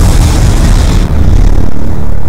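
Loud rushing whoosh with a heavy low rumble: the sound effect of an animated logo intro, its high hiss thinning out after about a second.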